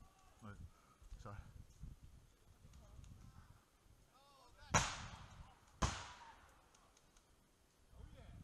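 Two sharp, loud bangs about a second apart, each with a short fading tail, the second slightly quieter: typical of airsoft pyrotechnic grenades going off. Low rustling and footsteps through leaf litter fill the first few seconds.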